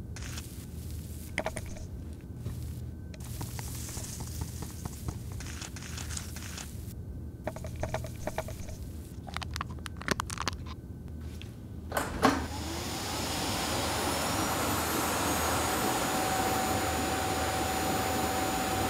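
Scattered small clicks and scrapes over a low hum, then about twelve seconds in a click as a vacuum cleaner motor is switched on; its whine rises as it spins up and settles into a steady run, supplying the suction that will sound the home-made organ's reeds and pipes.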